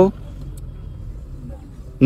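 Steady low rumble of a car's engine and tyres on the road, heard from inside the cabin.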